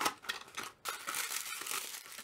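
Tissue paper crinkling and rustling as a wrapped item is slid out of a small cardboard box, after a sharp click of the box right at the start.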